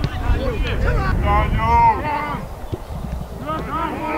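Footballers' voices shouting and calling on an open pitch, celebrating a goal, over a steady low rumble of wind on the microphone.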